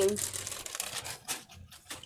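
Clear plastic packaging bag crinkling and rustling in short irregular bursts as a fabric fanny pack is pulled out of it, fading toward the end.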